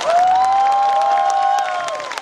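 Concert audience applauding and cheering, with several long high-pitched calls held for about a second and a half over the clapping.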